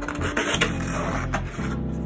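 Background music plays throughout, with a pencil scratching across wood as it traces an outline, heard mostly in the first second.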